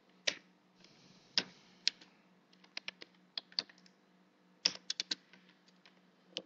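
Typing on a computer keyboard: irregular single keystrokes, a few louder ones in the first two seconds, and a quick run of keys near five seconds in.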